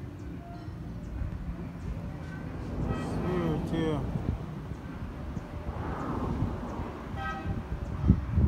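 Outdoor background of low rumble, with distant voices and two short horn-like toots, one about three seconds in and one near the end.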